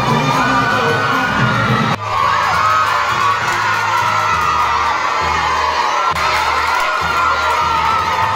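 A crowd of women ululating (kulavai) and cheering together: many long, wavering high-pitched cries overlapping without a break. It is the celebratory cry raised when the Pongal pot boils over.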